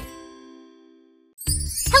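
A logo sting: one bright, bell-like chime struck at the start and ringing out, fading to silence over about a second. About a second and a half in, music and a girl's voice start.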